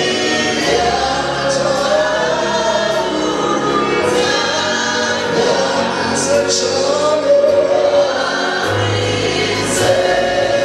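Live gospel worship music: a man singing lead into a microphone with choir voices, over a band holding sustained low bass notes.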